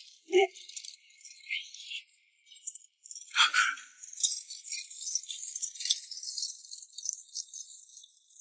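Irregular metallic jingling and rattling, as of the studs, beads and fittings on leather armour and costumes shaken in a scuffle. A short lower sound comes just after the start, and a brief sound falls in pitch about three and a half seconds in.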